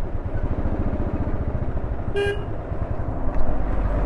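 Royal Enfield Bullet's single-cylinder engine running steadily under way, with a single short vehicle horn toot a little over two seconds in.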